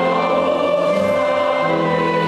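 Church choir singing a hymn in sustained chords, with a change of chord about a second and a half in.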